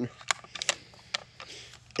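Bolt of a Lee-Enfield No. 4 Mk1 rifle being worked by hand: a few short, sharp metal clicks as the bolt handle is turned through its short 60-degree throw.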